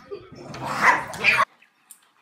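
A dog barking, two loud barks close together, cut off suddenly about one and a half seconds in.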